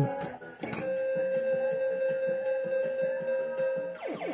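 Fruit King 3 slot machine playing its electronic music. A click comes just under a second in, then a long held tone sounds over a busy jingle.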